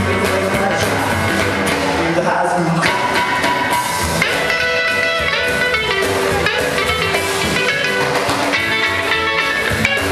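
Live rockabilly band playing: electric guitar, acoustic guitar, upright bass and drums, with a harmonica played into a hand-held microphone.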